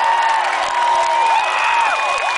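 Large concert crowd cheering and screaming, many high voices rising and falling over a steady roar.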